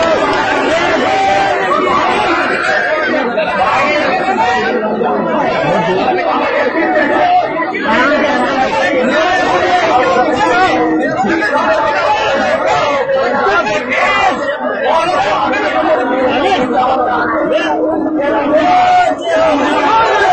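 Crowd chatter: many voices talking over one another at once.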